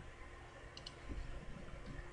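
A few faint computer clicks: a quick pair a little before one second in and a couple more shortly after, over a faint steady hum. These are clicks of a computer mouse and keyboard.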